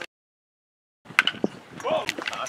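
The sound drops out entirely for about a second, then comes back with a sharp pop and a short shouted call from a voice at the ballfield.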